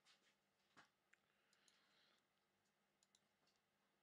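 Near silence with a few faint, scattered clicks, including a quick pair about three seconds in.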